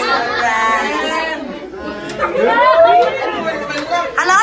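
Several children's voices chattering and calling out over one another, high-pitched and overlapping, dipping briefly about halfway through before rising again.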